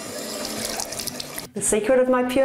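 Bathroom sink tap running, water splashing into the basin. The water sound cuts off abruptly about one and a half seconds in.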